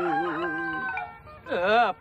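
A man's drawn-out chanting voice holds a wavering sung note, then gives a short rising-and-falling 'oh' about one and a half seconds in.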